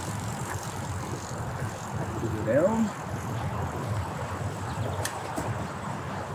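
Steady rushing of wind on the microphone and tyre noise while riding a bicycle along a paved path. A short call from a voice comes about halfway through.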